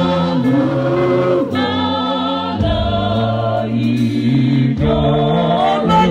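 Church choir singing a gospel praise hymn into microphones, long held notes in several voices, the phrase changing every second or two.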